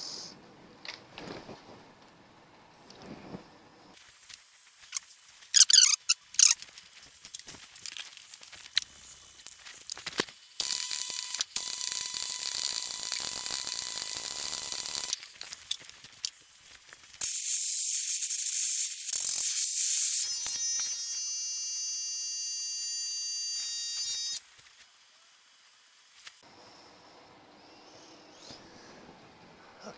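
Arc welding a bead on steel: a steady crackling hiss in two runs, one of about five seconds starting about ten seconds in and a longer one of about seven seconds after a short pause. Before the welding, a few sharp clanks of handling.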